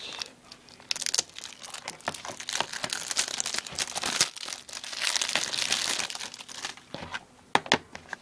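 Plastic shrink wrap on a DVD case crinkling and tearing as it is pulled off by hand, busiest in the middle, with a few sharp plastic clicks near the end.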